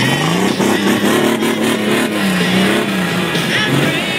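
Pickup truck engine revving up as it accelerates through a curve on packed snow, the pitch climbing over the first second, holding, then easing off near the end. Music plays along underneath.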